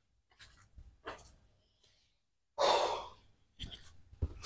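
A person exhaling heavily in a sigh about two and a half seconds in, with a fainter breath about a second in.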